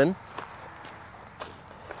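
A pause in speech: quiet, even outdoor background hiss with two faint short ticks, one near the start and one about halfway through.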